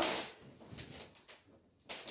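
Faint rustling of a cloak's heavy cloth being lifted off a man's shoulders and swung aside, with a brief click near the end.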